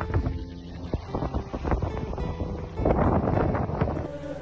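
Soft background music with held notes under wind buffeting the phone's microphone, with a louder gust about three seconds in.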